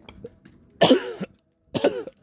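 A man coughing twice: a harsh cough about a second in and another near the end.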